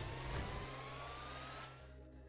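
Faint electronic sound effect from the online roulette game: a thin tone rising slowly in pitch over a hiss and a low steady hum, fading out near the end.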